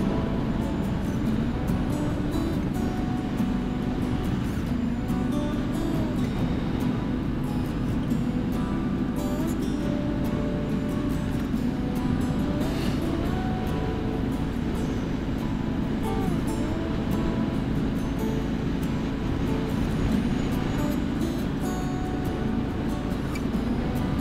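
2017 Triumph Street Scrambler's 900 cc parallel-twin engine running at road speed under steady wind noise, its pitch gliding up and down a couple of times with throttle changes. Music plays throughout.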